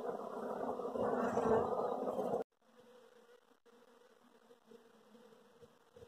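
A colony of Apis honeybees buzzing, a dense steady hum that is loud at first, then drops suddenly to a faint buzz about two and a half seconds in.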